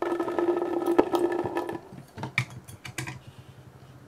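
Yellow water beads poured from a plastic cup into a glass bowl: a dense clicking patter for nearly two seconds as they land, then a few scattered clicks as the last beads settle.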